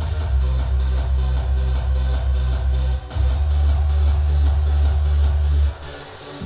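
Hardstyle dance music played loud: a heavy, sustained bass under a fast, even beat. The bass breaks briefly about halfway through and drops out shortly before the end.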